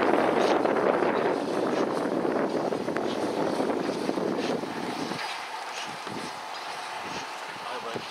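LMS Stanier 8F 2-8-0 steam locomotive 48151 working slowly away with its train, a steady rush of steam and exhaust that eases off about five seconds in.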